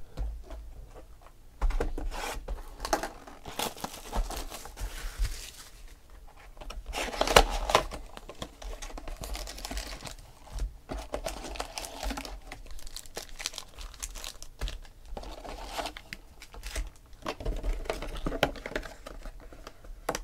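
Wrapper plastic and foil trading-card packs crinkling and tearing while a football card hobby box is unwrapped and opened and its packs are pulled out. Irregular crackles and sharp clicks throughout, loudest about seven seconds in.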